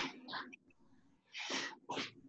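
Sharp, forceful breaths blown out by a person exercising hard during squat jumps. They come in quick pairs of short puffs: one pair at the start and another about a second and a half in.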